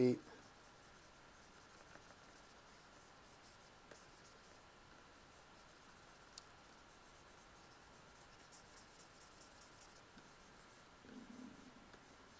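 Faint scratching of a stylus on a drawing tablet as quick hatching and scribbling strokes are laid down, with a dense run of rapid strokes near the end.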